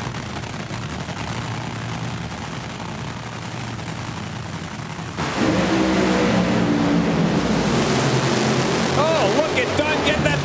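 Two supercharged nitromethane Top Fuel dragsters on the starting line, then about five seconds in a sudden, much louder blast as both launch at full throttle and run down the drag strip.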